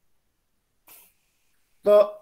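Near silence on a video-call line whose audio cuts out between words, broken about a second in by one brief, faint puff of noise, with a spoken syllable right at the end.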